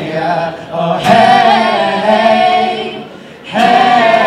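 A mixed group of male and female voices singing wordless held chords in close harmony, a cappella style. A loud chord comes in about a second in and is held, fades away shortly after the three-second mark, and the next chord enters just before the end.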